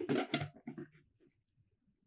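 Fingers scratching and rubbing across a corrugated cardboard camera box, close-miked: a quick run of scratchy strokes in the first second, the first two loudest.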